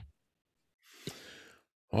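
A man's audible breath through the microphone, soft and about half a second long, about a second in; otherwise near silence.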